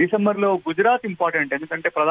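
Speech only: a man talking steadily, with brief pauses between phrases.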